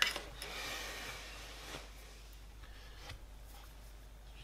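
Light handling noise at a workbench: a click right at the start, then soft rustling and a few faint taps as the rifle stock and parts are handled.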